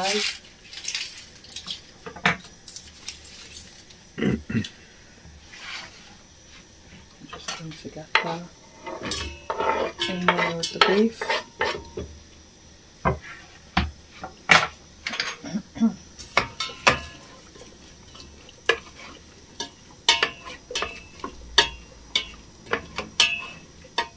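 Kitchen work clattering in sharp, irregular knocks: a knife on a wooden chopping board, chopped onion scraped off the board into a stainless steel pot, and metal pots and a utensil knocking on a gas hob.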